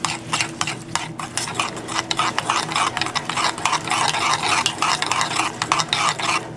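A metal spoon stirring a liquid soy sauce marinade full of chopped green onions in a stoneware bowl: a steady, quick run of clinks and scrapes against the bowl with a wet swish.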